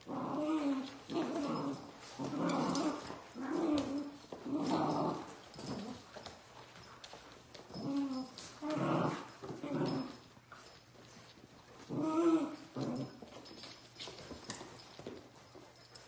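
Puppies play-growling while wrestling over a plush toy: a run of short growls, with a lull in the middle and quieter stretches near the end.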